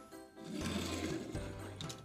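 Small die-cast toy car's wheels rolling and whirring across a hard tabletop as it is pushed, from about half a second in until near the end, over background music.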